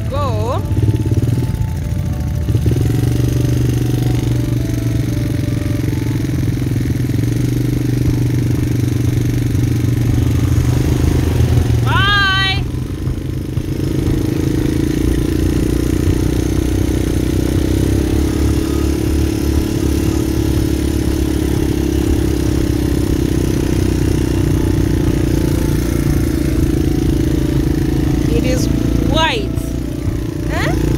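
Quad bike engine running steadily while being ridden over sand, heard from the rider's seat; the engine eases briefly about 13 seconds in, then picks up again. A short wavering voice is heard about 12 seconds in.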